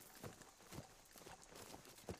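Faint footsteps of people walking through forest leaf litter and undergrowth: soft, irregular thuds, about two a second.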